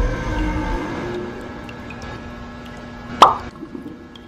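Background music fading out, leaving faint held tones, then a single short pop sound effect a little past three seconds in.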